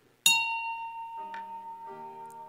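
Soft piano music begins: a high note struck sharply just after the start rings on and slowly fades, and lower held notes come in after about a second.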